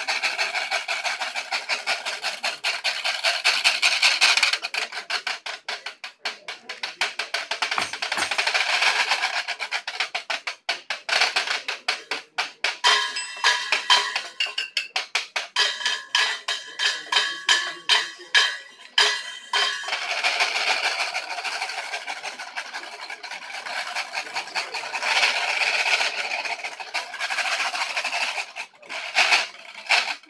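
Washboard played as a percussion instrument: long rasping scrapes across the ridges alternate with runs of fast rhythmic taps and strikes.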